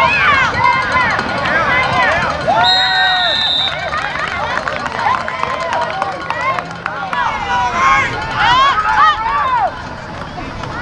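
Many voices yelling and cheering at once, high-pitched excited shouts from spectators and players at a youth football game, with a short steady shrill tone about three seconds in.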